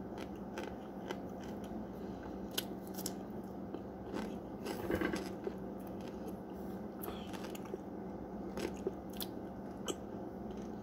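Close-up chewing of a mouthful of packed cornstarch chunks (365 mixed with Rumford) and pickle: scattered squeaky crunches and mouth clicks, the loudest about halfway through.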